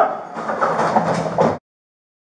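Close-range scuffle picked up on a body camera's microphone: clothing, duty gear and bodies rubbing and knocking against the camera in a dense rattling rush, which cuts off suddenly about one and a half seconds in.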